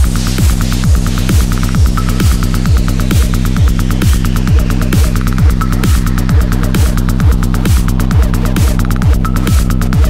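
Hard techno track: a heavy kick drum at about 140 BPM, each hit dropping in pitch, over a steady droning bass, with fast hi-hat ticks on top and a noise sweep falling slowly through the middle.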